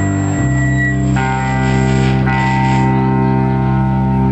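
Black metal band playing live, its amplified, distorted electric guitars holding long ringing chords that change twice in the first second or so.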